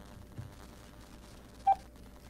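Faint steady line hiss, then a single short, loud electronic telephone beep near the end, the tone of the robocall hanging up.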